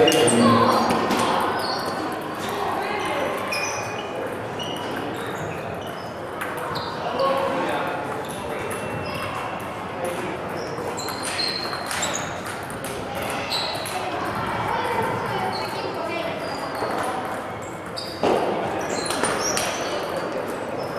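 Table tennis balls clicking and pinging off bats and tables in a large echoing sports hall, over background chatter. A sudden louder burst of noise comes near the end.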